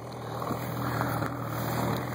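Snowmobile engine idling steadily, its hum slowly growing louder.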